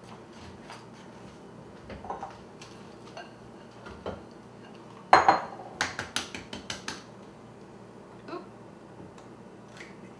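A brown egg knocked against the rim of a glass mixing bowl to crack it: one loud sharp knock about five seconds in, then a quick run of lighter clicks of shell and glass. Softer clinks of glass bowls on the tiled counter come before it.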